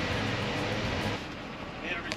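Steady vehicle engine noise, a low hum under a hiss, easing off about a second in.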